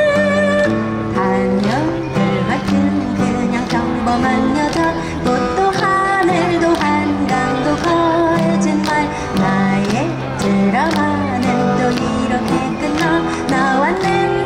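Two acoustic guitars strumming and picking a pop song live, with a woman's singing voice over them.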